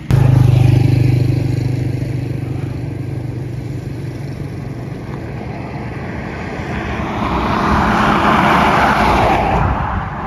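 A motor vehicle driving on the road: steady engine hum with road noise, starting abruptly. A rushing noise swells and fades between about seven and nine and a half seconds in.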